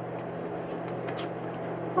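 Laundry machinery running with a steady low hum, and a few faint clicks about a second in.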